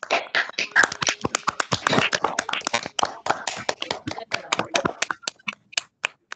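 Hands clapping quickly in applause, thinning out and stopping near the end.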